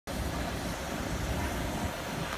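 Steady outdoor background noise with a low rumble, no distinct events.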